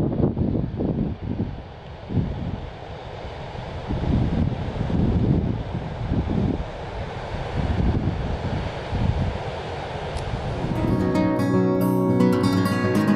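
Wind gusting across the microphone: a steady rushing noise with irregular low buffeting surges. Strummed acoustic guitar music comes back in near the end.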